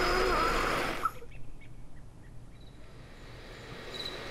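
Noise inside a moving car that cuts off abruptly about a second in, leaving a quiet hush with a few faint ticks.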